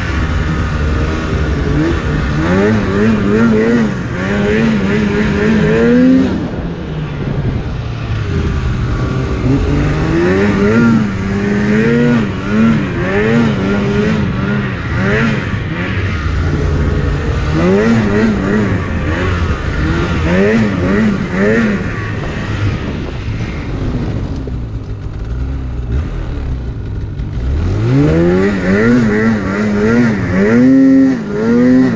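Polaris Axys RMK 800 two-stroke snowmobile engine revving up and down again and again as the throttle is worked through deep powder, easing off briefly and then winding up steeply near the end.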